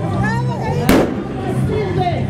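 A single sharp bang about a second in, over music with a steady bass line and a voice.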